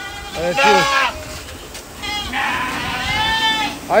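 Ardi goat bleating: a couple of short calls in the first second, then one long call from about two seconds in to near the end.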